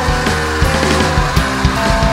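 Loud, heavy band music: distorted electric guitars sustaining chords over a drum kit, with hits landing about every half second.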